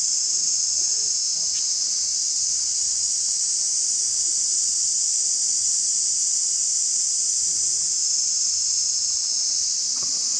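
Steady, unbroken high-pitched insect chorus, the continuous shrill buzzing of a tropical forest.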